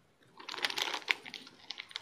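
Clear plastic craft packaging crinkling and crackling as it is handled, a quick run of small clicks starting about half a second in.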